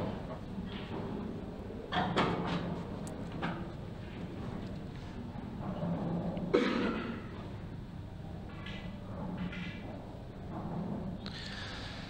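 Quiet room tone with faint, indistinct voices murmuring in the background.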